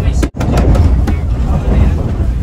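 Steady low rumble of a moving electric passenger train heard from inside the cabin, with a momentary drop-out about a third of a second in.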